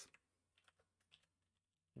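Faint computer keyboard typing: a few scattered, quiet keystrokes over near silence.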